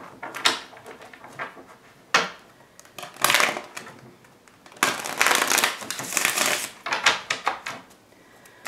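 A deck of tarot cards being shuffled by hand, in several rustling bursts, the longest lasting about two seconds just past the middle.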